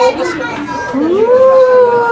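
Chatter of people talking, then about a second in a child's voice slides up into one long, held call that is the loudest sound.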